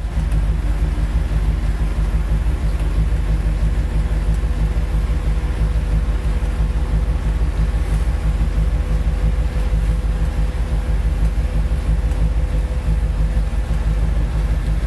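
A Ford 390 cubic-inch V8 with headers and glasspack mufflers idling with a steady, deep low rumble. A faint steady higher tone runs underneath it while the power convertible top cycles.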